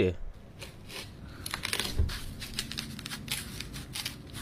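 Knife cutting into a yellow watermelon: a quick run of crisp crackling and tearing sounds from the rind and juicy flesh.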